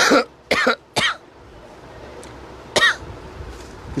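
A man coughing: three short coughs in quick succession in the first second, then one more shortly before 3 seconds in.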